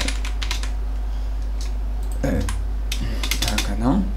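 Typing on a computer keyboard: a few quick keystrokes at the start, then another cluster of keystrokes in the second half, over a steady low electrical hum.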